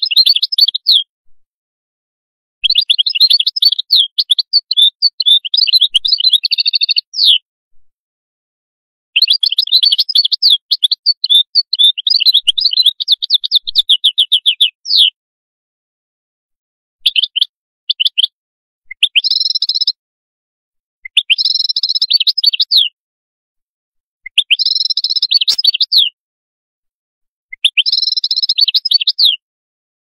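European goldfinch singing: long twittering runs of rapid chirps, then from about halfway through shorter, similar phrases repeated roughly every two seconds.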